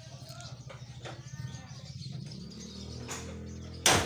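A low, steady machine hum that grows louder after about three seconds, then a single sharp hammer blow on the truck's metal near the end.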